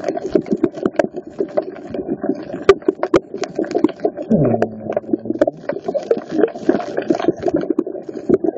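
Muffled underwater sound picked up by a snorkeler's phone: a steady low water rush with many irregular sharp clicks and crackles. About four seconds in, a short low hum drops in pitch and then holds for about a second.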